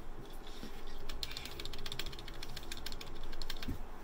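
Laptop keyboard keys, the Esc key among them, pressed over and over: a quick run of light plastic clicks, with a duller knock near the end.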